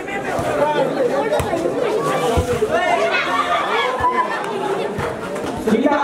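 Many voices talking and calling over one another, the chatter of players and spectators around a volleyball court, with a few short sharp knocks scattered through it.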